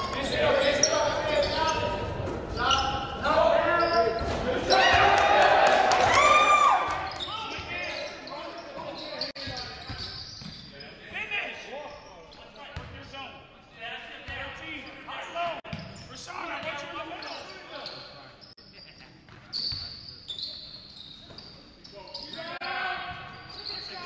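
Basketball game sound in a gym: a ball bouncing on the hardwood court among indistinct players' and spectators' voices, echoing in the large hall. It is loudest in the first several seconds, then quieter.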